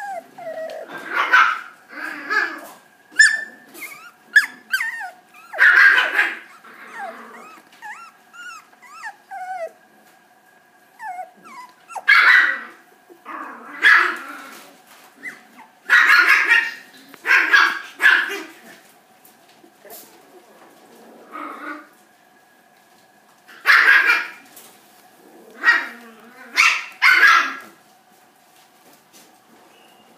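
Miniature schnauzer puppy barking and yipping in repeated short bursts with quiet gaps between, and thin whining in between in the first part.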